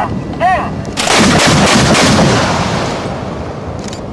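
Anti-aircraft gunfire: a loud report about a second in, rumbling and dying away over about two seconds.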